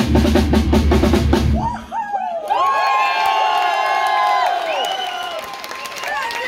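Live rock band ending a song on a fast drum roll over heavy bass, which cuts off about two seconds in; then the audience cheers and screams.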